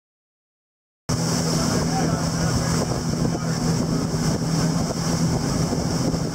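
Motorboat under way: its engine runs with a steady low hum while water rushes past the hull and wind buffets the microphone. The sound cuts in abruptly about a second in.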